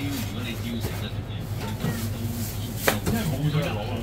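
A Chinese cleaver chopping on a thick round wooden block, with one sharp chop about three seconds in, over a steady low hum.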